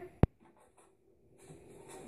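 A single sharp click about a quarter second in, followed by faint room noise.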